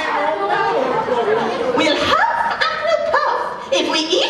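Speech only: performers talking on a theatre stage, heard in a large hall.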